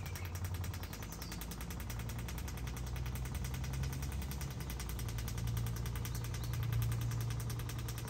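Suction pool cleaner and its pool pump running: a steady low hum with a fast, even ticking.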